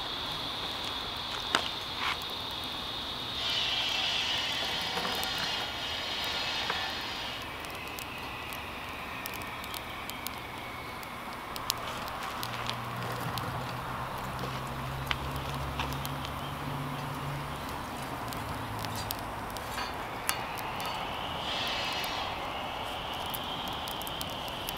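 Small twig fire burning in a Rocket King stick stove, with scattered sharp crackles and snaps as twigs burn and are broken and fed in. A steady high-pitched hum runs in the background for the first seven seconds and again near the end, and a low drone comes and goes in the middle.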